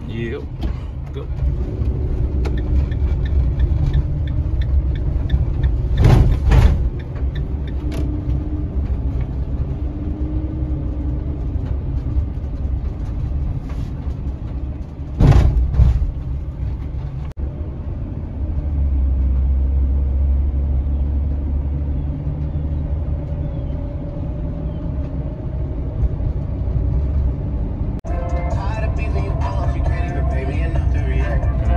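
Inside a delivery cargo van's cab while driving: a steady low engine and road rumble, broken by two loud knocks about six and fifteen seconds in. Music comes in near the end.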